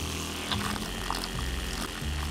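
Small 12-volt water pump running with a steady hum, pushing water through the hollow 3D-printed casing in a leak test.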